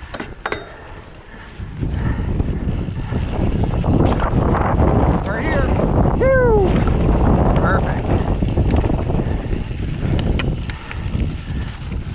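Wind rushing over the microphone and mountain bike tyres rolling as the bike picks up speed downhill, after a few sharp clicks in the first second. A few short falling pitched sounds come around the middle.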